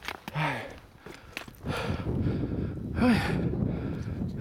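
A hiker breathing hard while walking uphill: a loud breath about every second and a half, some of them voiced, with footsteps in between.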